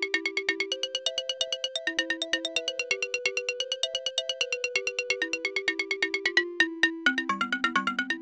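Electronic outro music: a quick, even pulse of short synthesizer notes carrying a simple melody. It breaks off briefly about six and a half seconds in and picks up again on lower notes.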